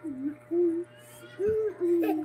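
A woman humming with her mouth closed: short low phrases of a few notes each that rise and fall.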